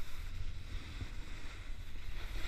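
Wind buffeting the action camera's microphone in an uneven low rumble, over the steady hiss of snowboards sliding on groomed snow.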